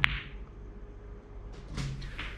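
Snooker cue ball striking the brown with a single sharp click, followed by a short ring, on a soft stun shot played one tip below centre. A few faint knocks follow near the end as the balls run on.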